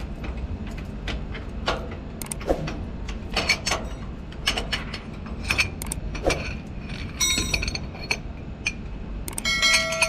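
Hand tools clicking and knocking on metal while an igniter plug is unscrewed from a jet engine's diffuser case, with brief ringing metallic clinks about seven seconds in and again near the end. A steady low hum sits underneath.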